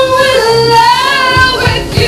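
Live band music: a woman's voice holds a long sung note with vibrato over bass and guitar, and drum hits come back in near the end.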